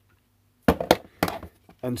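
A few sharp knocks and clatters of hard equipment being handled and set down on a wooden workbench: three knocks in quick succession about a second in.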